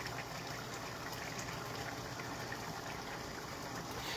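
Coconut curry sauce simmering in a pan on the stove, a steady bubbling hiss.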